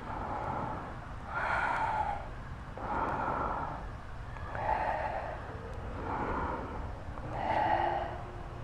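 A woman breathing out audibly about every second and a half, five breaths in a row, with the effort of repeated standing leg kicks.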